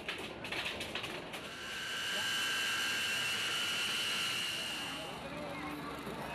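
A few knocks of cargo being handled, then a steady high-pitched turbine whine with hiss that fades out about five seconds in, typical of an aircraft engine or auxiliary power unit running by an open cargo hold.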